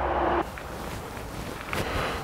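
Steady, fairly quiet outdoor background noise, with a short held hum in the first half second.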